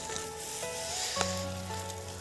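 Dry threshed soybean stalks and pods crackling and rustling as they are handled on a tarp, under faint music of held notes.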